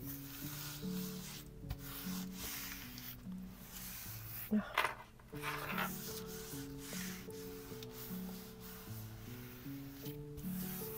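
Palms rubbing and smoothing thin wet strength tissue paper down onto an inked gel printing plate to lift the print: a dry, continuous brushing rustle, louder briefly about halfway through. Soft background music with held notes plays underneath.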